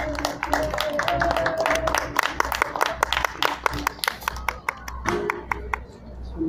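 Sustained electric guitar notes from a band's amplifier, played over a dense, irregular run of sharp claps.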